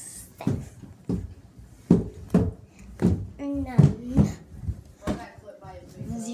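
A girl's voice, muffled and indistinct, with a run of sharp knocks and bumps about a second apart.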